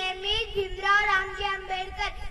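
A young boy singing, holding long steady notes.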